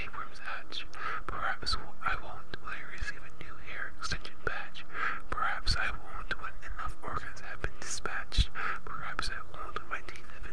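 A person whispering steadily, with many short sharp clicks scattered through it.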